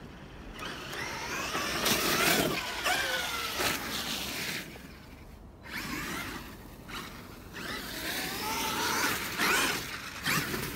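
Traxxas X-Maxx 8S electric RC monster truck's brushless motor whining under throttle, its pitch sliding down and later climbing again as it speeds up, over the rush of its tyres on dirt and snow. The sound is loudest about two seconds in and again near the end.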